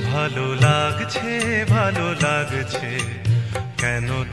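Instrumental interlude of a Bengali song, without singing: a lead melody that bends and wavers in pitch over a bass line and steady percussion.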